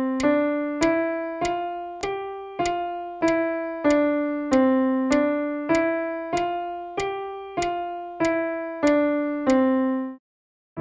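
Yamaha piano played one note at a time in steady quarter notes, about one every 0.6 seconds. It is a five-finger exercise stepping up from middle C to G and back down (C D E F G F E D C, twice over), each note held until the next beat. The last C rings on briefly and is cut off just after the end.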